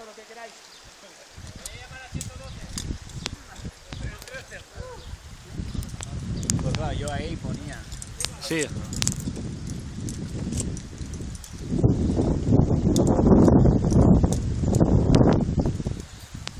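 Faint voices and scattered sharp clicks over a low, uneven rumbling noise that grows loud in the last few seconds.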